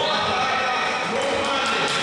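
Voices calling out over dull thuds from a kickboxing bout in the ring, with several sharper knocks in the second half.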